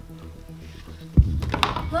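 A cardboard gift-box lid pulled off and set down on a wooden coffee table, one low thump about a second in followed by a few light clicks, over soft background music.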